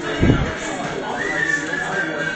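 Background voices in a room, with a dull low thump about a quarter second in and a thin, high, slightly wavering tone held for about a second near the end.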